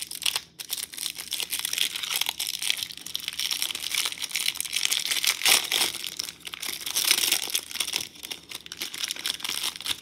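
A plastic trading-card pack wrapper crinkling and crackling continuously as hands work it open.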